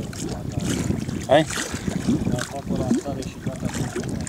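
Wind buffeting the microphone and choppy water lapping around a small fishing boat, a steady rough rumble, with a brief remark from a man's voice about a second in.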